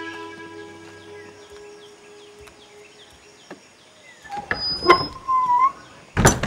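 A held music chord fades away over the first second or so, leaving faint chirping. Near the end come a few knocks and a clatter at a wooden door, then a short wavering creak from its hinge or latch.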